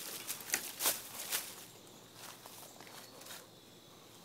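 Footsteps through dry fallen leaf litter: several sharp crackles in the first second and a half, then fainter rustling.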